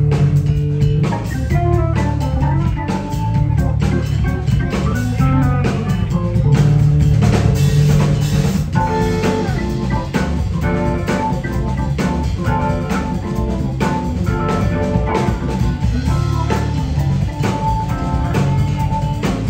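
Live jazz trio playing: electric guitar, drum kit and keyboards together, with a steady beat and held melody notes above it.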